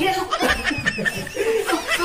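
Laughter: a rapid string of short laughs and snickers.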